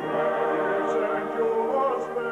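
A stage cast singing together in chorus, holding long notes. The passage begins with an abrupt cut.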